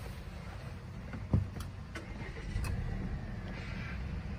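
A 2020 Volvo S60 T6's turbocharged and supercharged engine starting, heard from inside the cabin: one short thump about a second and a half in, then a low, steady idle.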